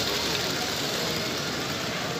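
Motorised Lego train running past close by on plastic Lego track: a steady whirring rattle of motor and wheels.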